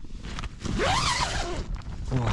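Tent door zip pulled open in one long stroke, its pitch rising and then falling as the pull speeds up and slows.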